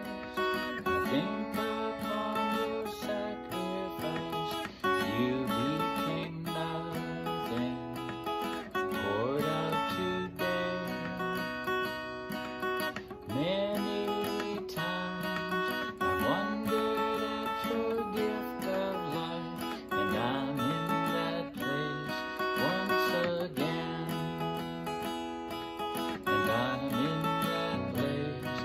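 Cutaway acoustic guitar strummed in a steady rhythm, playing chords as the instrumental introduction to a song.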